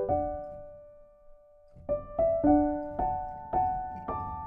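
Solo piano background music: a held chord dies away into a brief pause, then single notes pick up again about two seconds in, a few notes a second.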